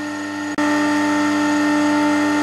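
Electric motor of a pull-test rig running steadily as it loads a girth-hitched sling toward 10 kN. About half a second in, the hum abruptly gets louder, with a slightly different tone.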